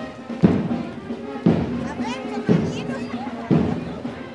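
Parade bass drum keeping a steady marching beat, about one stroke a second, with music and voices mixed in around it.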